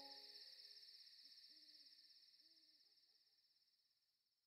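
Very faint night ambience as the song's last chord dies away: two soft owl hoots about a second apart over a steady high insect chirr, fading into silence near the end.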